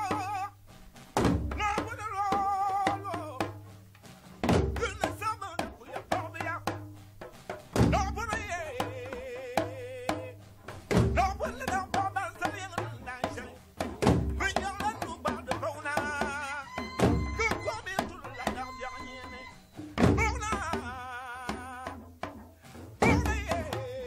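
Recorded Dagbon drum music from Ghana, sparse and spaced out: a deep drum stroke about every three seconds stands out, with lighter strokes and long wavering pitched tones in the gaps.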